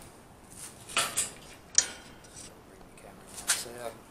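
Steel trolley frame and handle clinking and rattling as they are handled, with a sharp metallic click near the middle.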